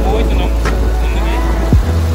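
A vehicle moving along a road, its running noise under music with a deep bass that drops in pitch about once a second.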